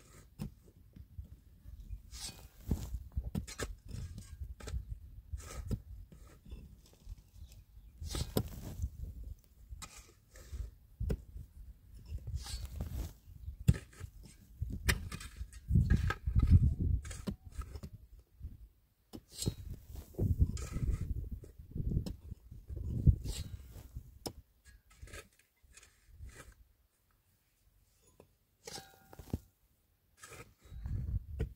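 Pickaxes striking and chopping into dry, stony earth, with clods and loose dirt scraping and falling. The blows come irregularly, in clusters, with a lull late on.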